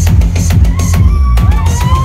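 Loud techno from a live DJ set over a festival sound system: a heavy kick drum and bass line driving steadily, with a sliding synth line coming in about halfway through.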